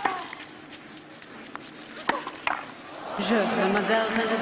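Tennis ball struck by rackets on a clay court, a few sharp pops about two seconds apart in a short rally. Then crowd applause and cheering swell from about three seconds in as the point ends.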